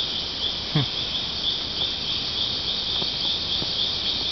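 Insects chirring in a steady high-pitched chorus that pulses about three times a second, with a single short downward-sliding sound about a second in.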